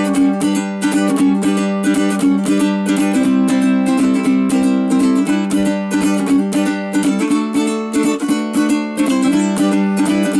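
Ukulele strummed quickly in a steady rhythm, an instrumental break in the key of G between sung verses.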